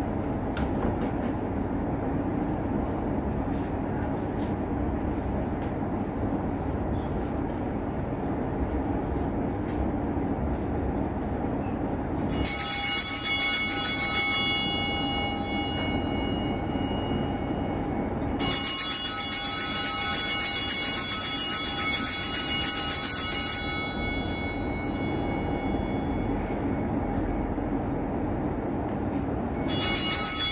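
Altar bells rung in three bursts of bright metallic ringing: one of about two seconds, a longer one of about five seconds, and another starting at the very end. A steady low hum fills the gaps between them.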